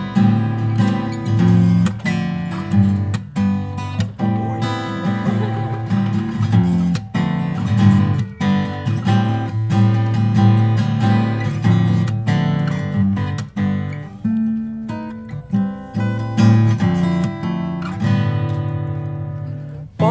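Acoustic guitar strummed in a steady rhythm of chords, an instrumental break in the song with no singing.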